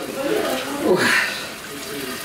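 Dry-toasted grain sliding and pouring from a frying pan into a metal pot while a metal spoon scrapes it out of the pan, getting quieter in the second half.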